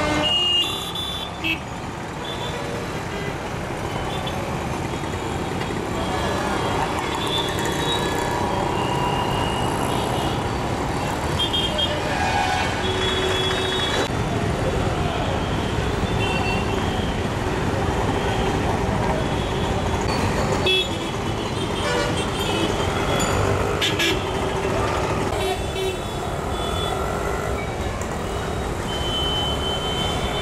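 Busy street traffic of auto-rickshaws, motorbikes, buses and cars running steadily, with frequent short high-pitched horn toots sounding throughout.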